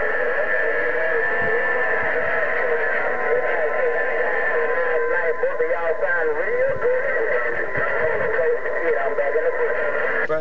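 HR2510 radio's speaker receiving a distant station on 27.025 MHz: a narrow band of static with steady heterodyne whistles. A garbled voice wavers through it, clearest from about the middle on.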